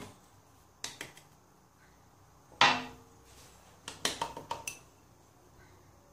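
Oil and then sugar poured from drinking glasses into a plastic mixing bowl, with a few light knocks and clinks of glassware; the loudest sound comes about two and a half seconds in, and a short run of clicks with a brief ring follows about a second later.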